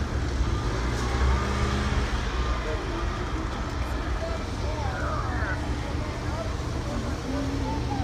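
City street traffic: a steady low rumble of cars driving past, with faint voices of people in the background.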